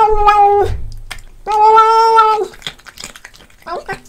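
A cat eating small fish and making loud, drawn-out "nom" calls as it eats: one held call ends about half a second in, a second lasts about a second from a second and a half in, and a short one comes near the end, with soft chewing clicks between.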